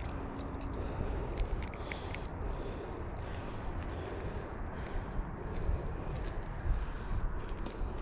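Close-up handling noise while a small bass is unhooked from a small fishing lure: scattered sharp clicks and rustles over a steady low rumble.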